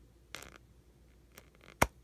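Pages of a Lawn Fawn 6x6 paper pad being flicked through by thumb: a short paper rustle a little after the start, a faint tick, then one sharp snap of a page near the end.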